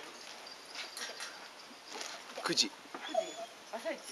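A dog whimpering: a falling whine about two and a half seconds in, then a couple of short, higher whines.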